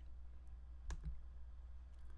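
A single computer mouse click about a second in, clearing a text selection, over a steady low hum.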